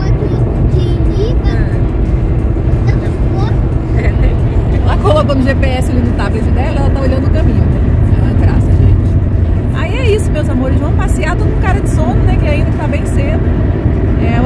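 Steady low road and engine rumble inside the cabin of a moving car at motorway speed, under people's voices.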